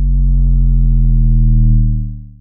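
A deep synthesized bass tone from a station ident, swelling in and held steady, then fading away near the end.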